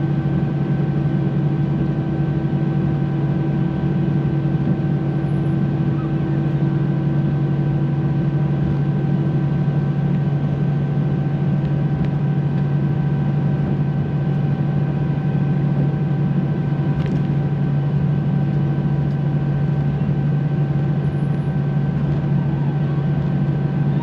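Steady cabin drone of an Airbus A319 taxiing: a low hum from the engines at taxi power, with several steady tones above it.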